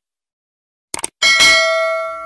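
Subscribe-button animation sound effect: about a second in, a quick double mouse click, then a notification bell chime that rings on in several steady tones and slowly fades.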